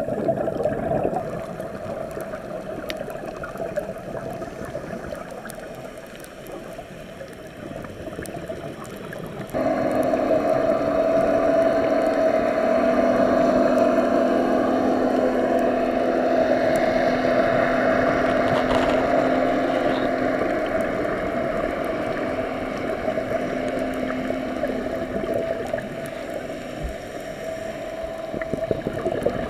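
Underwater ambience of water noise, then about a third of the way in a louder, steady mechanical drone starts suddenly. It holds two low, even tones through the water and eases off slightly near the end.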